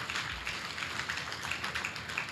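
Steady background hiss with many faint, rapid scattered taps.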